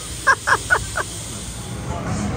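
A bird giving four short caw-like calls in quick succession, about a quarter of a second apart, in the first second.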